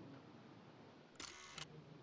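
Near silence, broken just over a second in by one short camera-shutter-like sound lasting about half a second.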